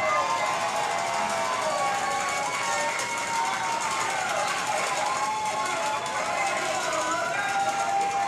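A crowd of many voices cheering and shouting at once, loud and unbroken.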